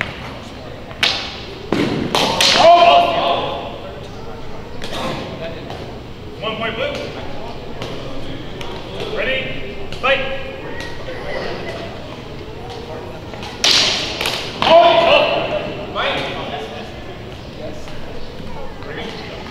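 Longsword fencing bout: several sharp knocks and thuds of blows, about a second in, near two, five and fourteen seconds. Loud shouts and voices come in between and echo in a large hall.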